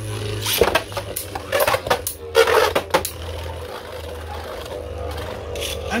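Two Beyblade Burst tops, Cyclone Ragnaruk and Ultimate Valkyrie, spinning in a plastic stadium: a steady low whir with sharp plastic clacks as they collide and scrape. There is a quick run of clashes about two and a half seconds in and another knock near the end.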